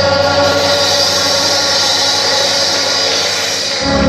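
Church choir singing a long held chord, the voices blended and steady; just before the end it moves to a new chord with deeper notes underneath.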